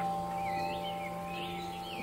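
Soft ambient background music of long held tones, with birds chirping briefly over it.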